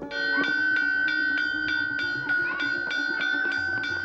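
Hanging metal plate used as a school bell, struck rapidly with a hammer at about four blows a second, so that it keeps ringing with a steady high tone. It is the signal that class is over.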